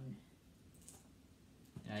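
A comic book being handled and set down: a faint, brief click or rustle about a second in, over quiet room tone.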